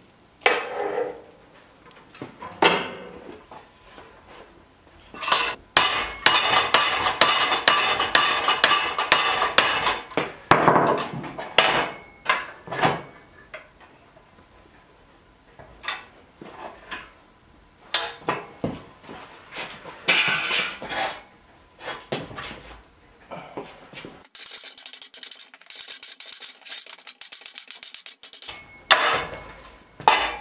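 Steel bar clanking and clattering against metal as it is drawn from a wood-stove firebox and clamped and bent in a steel bench vise. There are scattered knocks and, about six seconds in, a dense run of rapid clattering clicks lasting about four seconds.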